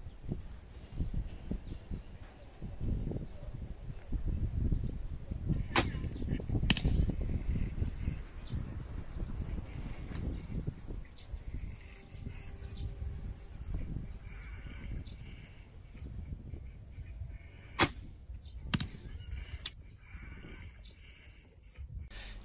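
Compound bow with a self-loading arrow magazine shooting: two sharp snaps of the string release, about twelve seconds apart, each followed by fainter clicks, over a low rumble.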